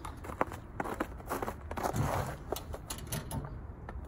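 Footsteps on snowy ground: a string of irregular steps with small scuffs and rustles.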